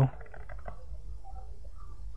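A pause in speech filled by a steady low background hum, with a few faint, indistinct sounds above it.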